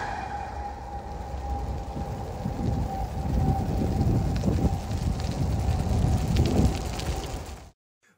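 Uneven low rumble of outdoor noise, with a faint steady tone that fades away over the first few seconds; the sound cuts off suddenly just before the end.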